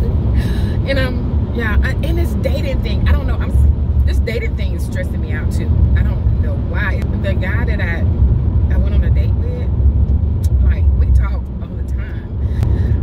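A woman talking inside a moving car's cabin over its steady low road and engine rumble.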